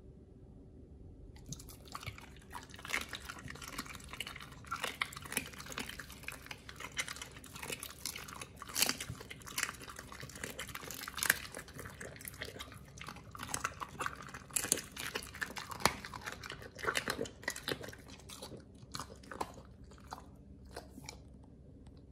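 A pit bull chewing and crunching raw duck bill with its back teeth: irregular wet crunches and cracks of bone and cartilage. The crunching starts about a second and a half in and thins out near the end.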